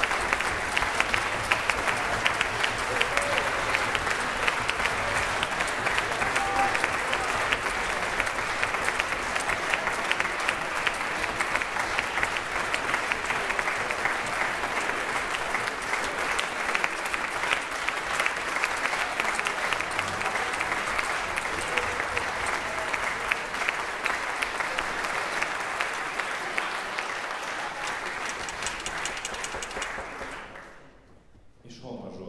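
Concert-hall audience applauding steadily with many hands clapping, easing off slightly near the end.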